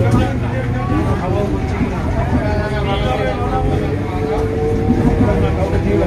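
Suburban electric local train running, a steady rumble with a low hum, heard from its open doorway, with people talking over it.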